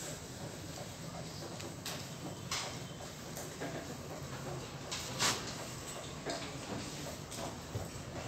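Marker pen scratching and squeaking on a whiteboard in short strokes as words are written, over a steady room hum; the loudest stroke comes about five seconds in.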